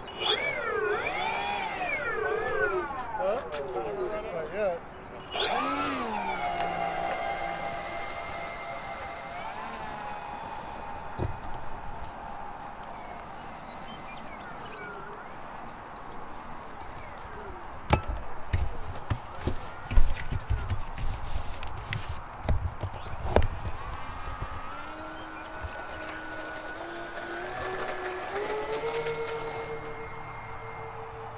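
The twin electric motors and propellers of a Nexa A-26 Invader RC model whining, their pitch swinging up and down, then holding steady for a few seconds. Near the end the pitch climbs in steps to a steady high whine as the throttle comes up for the takeoff run. Several sharp knocks come in the middle.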